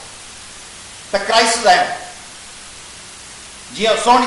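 A man speaking into microphones in two short phrases, one about a second in and another starting near the end, with a steady hiss in the pauses between.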